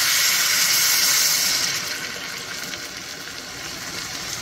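Broth poured into a hot cast-iron skillet of toasted jasmine rice, splashing and sizzling as it hits the pan. The pour stops about two seconds in, and a quieter steady sizzle carries on.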